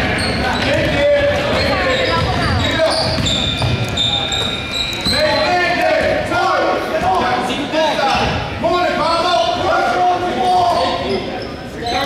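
A basketball being dribbled on a hardwood gym floor, the bounces echoing in a large hall.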